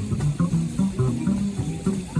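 Small jazz band playing live: electric guitar and upright double bass, with drums.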